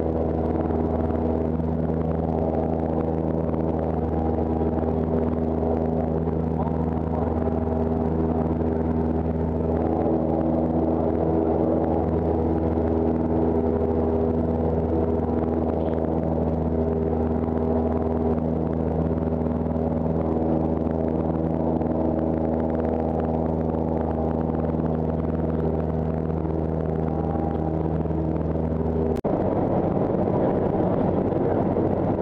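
A Cessna 172's piston engine and propeller heard from inside the cockpit in flight: a loud, steady drone at a constant pitch. About a second before the end it gives way abruptly to a rougher rushing noise.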